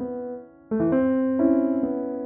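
Piano accompaniment from an opera score, played in held chords. A chord dies away, then a new chord is struck a little under a second in and shifts to another chord about halfway through.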